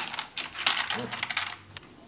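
Backgammon pieces clicking and clattering against a wooden backgammon board as they are handled and set out: a quick, irregular run of sharp clicks that stops shortly before two seconds in.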